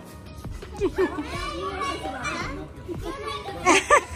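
Young children's voices calling and chattering while they play, with loud high-pitched shouts near the end.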